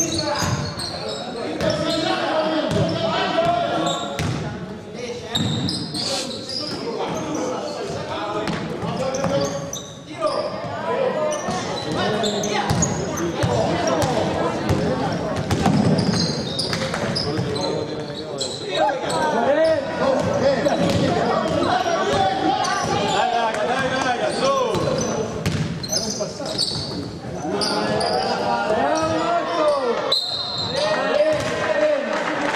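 Indoor basketball game sounds: a ball bouncing on a hardwood court amid the overlapping shouts and chatter of players and spectators, echoing in a large gym.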